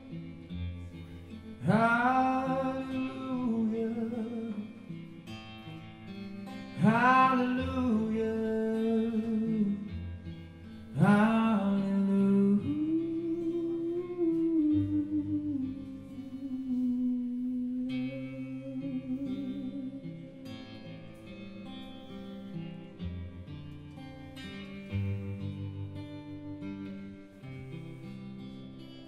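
Live music: a man sings long held phrases over an acoustic guitar, with bass underneath. Three strong sung phrases come in the first half, then the voice settles into one long held line that fades, leaving quieter guitar playing.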